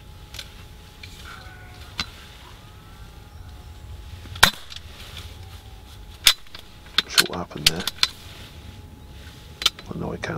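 A series of sharp clicks and knocks, about a dozen, irregularly spaced, the loudest about four and a half seconds in and several bunched together between seven and eight seconds.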